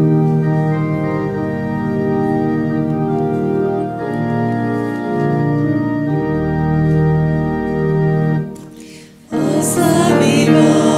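Church organ playing a hymn introduction in sustained, held chords that change every few seconds. About eight and a half seconds in the chord is released and the sound drops away briefly, then the music comes back in louder just before the end.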